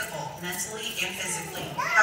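Indistinct voices talking, with one voice rising in pitch near the end.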